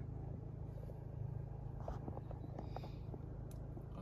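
Low steady hum of the SEAT Leon Cupra's 2.0 TSI engine idling, heard from inside the cabin, with a few faint clicks about halfway through.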